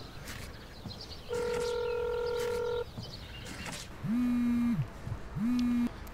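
A phone call ringing out: a steady beep held for about a second and a half, then two shorter, lower tones near the end.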